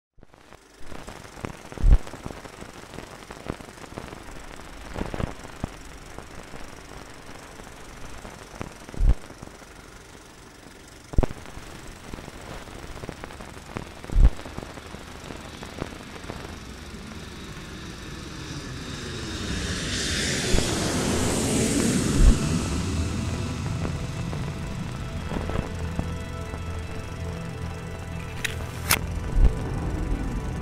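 War sound effects: a series of heavy booms a few seconds apart, like distant explosions. Then a loud rush swells, peaks and fades, like a jet aircraft passing overhead. A low, steady music drone comes in near the end.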